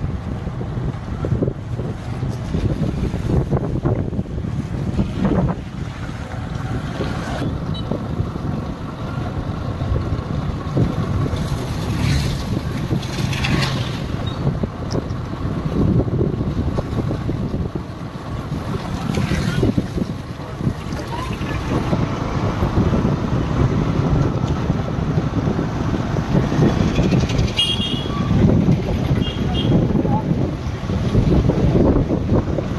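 Wind buffeting the microphone outdoors: a low rumble that keeps rising and falling over wet-weather street ambience.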